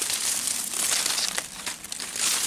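Dry fallen leaves crunching and rustling underfoot as someone steps through forest leaf litter, dropping off briefly near the end.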